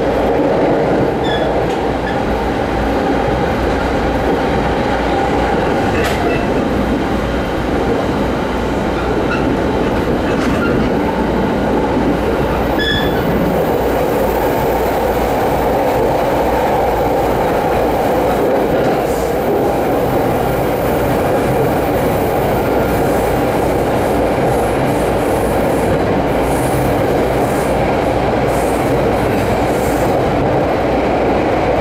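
A Rinkai Line 70-000 series electric train running at speed, heard from inside the passenger car. The wheels on the rails make a steady rumble, with a few brief high squeaks in the first half.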